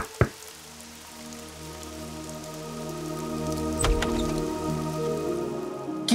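Dramatic background score: sustained chords that swell gradually, with a sharp hit just after the start and a deep low hit about four seconds in.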